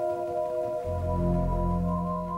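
Background music of soft, sustained notes, with a deep low note coming in a little before halfway.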